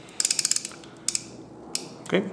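Ratcheting frame-counter dial of a bulk film loader being turned by hand to zero: a quick run of about ten sharp clicks, then a few single clicks about a second in and near the end.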